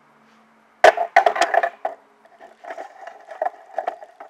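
Handling noise on a Toshiba Camileo S20 camcorder, picked up by its own built-in microphone: a sharp knock about a second in, a quick run of clicks and knocks, then fainter irregular ticking. It is the kind of unwanted mechanical noise that turning the camera or pressing its buttons makes on this model.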